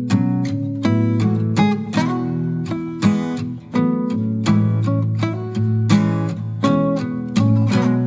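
Background music: an acoustic guitar strummed in a steady, even rhythm.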